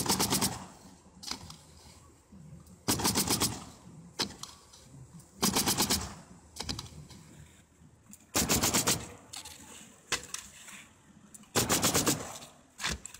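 Pneumatic coil roofing nailer being bump-fired into asphalt shingles: bursts of about five or six rapid shots roughly every two and a half to three seconds, with single sharp clicks between.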